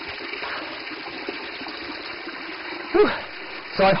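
Mountain spring water running steadily from a stone spout, a thin stream falling onto the stone below.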